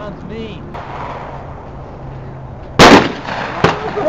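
A single loud shotgun blast about three seconds in, followed a little under a second later by a shorter, sharper crack.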